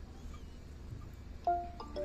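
A short electronic chime of a few stepped notes about one and a half seconds in from the Leica total station kit, signalling that the measurement to the known target has been taken.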